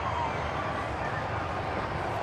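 Steady murmur of a cricket ground's crowd, heard as an even background noise on an old television broadcast.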